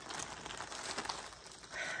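Plastic packaging bag crinkling and rustling in irregular crackles as it is handled and opened.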